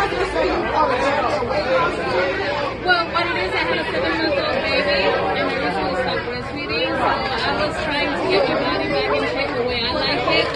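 Speech and chatter: people talking over one another, with no other sound standing out.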